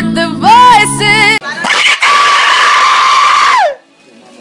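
A voice singing over strummed acoustic guitar, broken off about one and a half seconds in by a loud raspy scream. The scream is held for about two seconds, then falls in pitch and stops.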